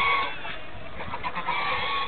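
White domestic ducks calling: a drawn-out call at the start, short repeated quacks, then another held call near the end, as hungry ducks begging for food.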